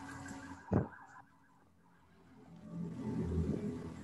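Faint background noise from the call's open microphones, with a single soft thump about three-quarters of a second in and a low rumble that swells and fades in the second half.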